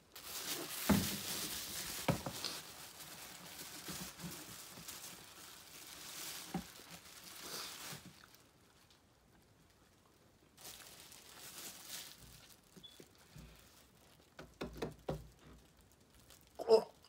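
Thin plastic bag crinkling and rustling as it is handled, with a few sharp knocks in the first couple of seconds. A shorter rustle follows after a pause, and a few soft knocks come near the end.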